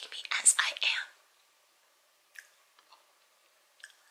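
A woman making a funny, breathy whispered mouth noise, without voice, lasting about a second.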